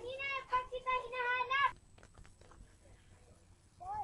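A girl's voice calling out in long, high, drawn-out calls, which stop about two seconds in. After that there is only faint background with a few small ticks and a short vocal sound near the end.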